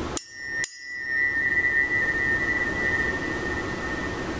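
A pair of steel tuning forks tuned to C and G, struck twice about half a second apart, then ringing with a steady high tone that holds for about three seconds before fading.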